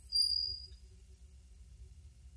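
A steady high-pitched tone, fading out within the first second, followed by a faint low hum.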